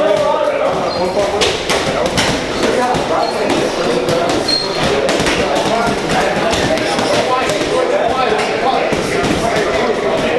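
Boxing gloves punching heavy bags: a string of irregular thuds, over the steady chatter of voices in a busy gym.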